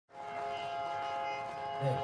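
A steady held chord of several tones, sounding together for nearly two seconds. A man's voice comes in just as it ends.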